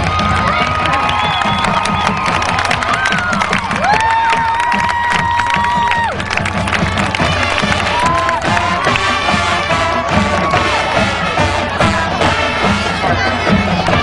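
Marching band playing on the field, drums keeping a steady beat underneath, with the crowd cheering and shouting over the music.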